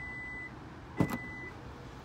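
Kia Sportage hands-free smart liftgate chiming its warning: two steady high beeps about half a second long, one at the start and one about a second in. At the second beep comes a sharp clunk, the tailgate latch releasing before the liftgate opens under power.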